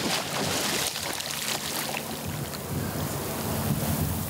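Sea water splashing and churning as a free diver in a wetsuit plunges head-first under the surface, a continuous rushing splash.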